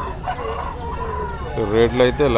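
A rooster crowing: one drawn-out call lasting about a second, followed near the end by a man's voice.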